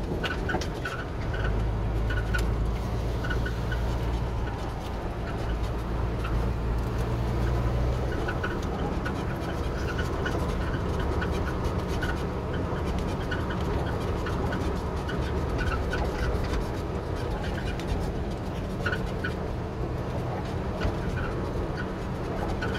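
A vehicle's engine running steadily as it drives along a bumpy dirt track, heard from inside the cab, with frequent small rattles and squeaks from the cab. The low engine note is heavier for the first several seconds, then eases.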